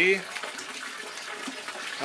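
Small metal root rake combing old soil out of a bonsai's root ball: a faint, steady scratchy rustle of soil crumbs loosening and falling, with small ticks.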